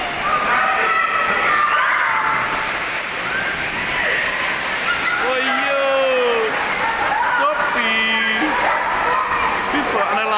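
Tipping bucket on a water-play tower emptying its load: a steady cascade of water pours down and splashes into the pool. Swimmers shout and call out over it in the indoor pool hall.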